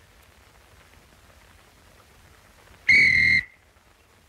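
A single short, loud whistle blast at one steady pitch, about three seconds in, against a quiet background.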